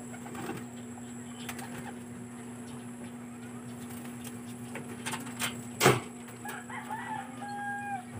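Birds calling, with a rooster crowing near the end, over a steady low hum. A single sharp knock about six seconds in is the loudest sound, among a few lighter clicks.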